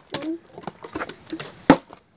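Plastic water bottle knocking and clattering on a wooden step as it is flipped and handled: several light clicks and knocks, with one sharper knock near the end.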